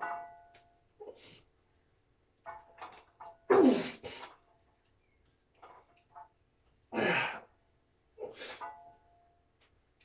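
Heavy bent-over barbell rows: a sharp forceful breath or grunt on each rep, about every three seconds, with metal weight plates clanking and ringing on the bar between them.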